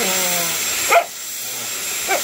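Border collie "talking": drawn-out grumbling whines that bend up and down in pitch, with a sharp rising squeak about a second in. It is the dog complaining about the hair dryer.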